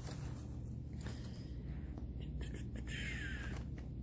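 Faint clicks and scrapes of plastic N-scale model train cars being pushed together by hand while their couplers fail to connect, over a steady low hum.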